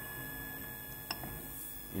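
Ender 3 3D printer running mid-print, a steady fan hum with a faint steady whine. One short click comes about a second in as the control knob is worked.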